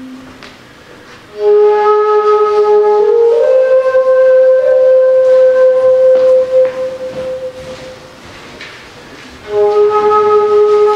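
Replica Southwest desert rim flute, an end-blown wooden flute, playing a slow melody. A note enters about a second and a half in, steps up in pitch a few times and is held, then fades out; a new, lower note starts just before the end.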